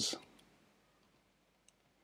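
Faint keystrokes on a computer keyboard: a few scattered soft clicks, the clearest one near the end.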